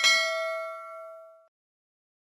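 Notification-bell chime sound effect: one bright ding that rings and fades out over about a second and a half.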